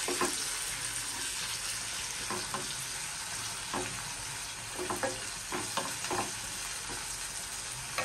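Sliced onions sizzling in hot oil in a kadhai, with a wooden spatula scraping and tapping against the pan now and then as they are stirred.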